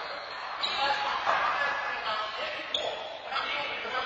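Players' voices echoing around an indoor handball court, with a few short sharp knocks of a handball bouncing.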